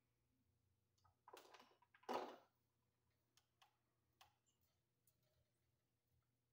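Faint handling sounds of fixture wiring being worked by hand: two short rustling scrapes about a second and two seconds in, the second the loudest, then a few light clicks, over near silence.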